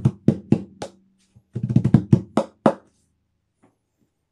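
Bare hands striking the flat playing side of a hybrid steel tongue drum: two quick flurries of taps with a low ringing tone under them, then a pause over the last second.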